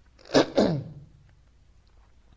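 A single sneeze, about a third of a second in: a sharp, sudden burst with a short falling voiced tail.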